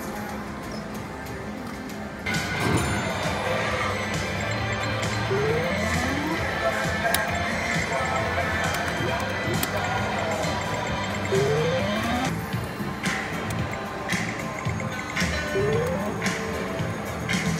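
Video poker machine's electronic sound effects: short rising tones recur every few seconds over steady casino background music, with a few sharp clicks near the end.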